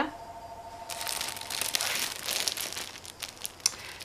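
Cellophane bag crinkling as it is handled and turned over, with a paper pack inside. The crinkling starts about a second in and goes on for about three seconds in short crackles.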